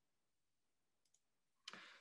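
Near silence, with two faint clicks a little after halfway through.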